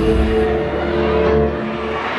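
Pop song's backing music played loud over a PA, with sustained held tones over a deep bass that drops out near the end.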